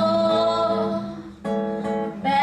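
A woman singing with acoustic guitar accompaniment: a long held note, a short break about a second and a half in, then the next phrase begins.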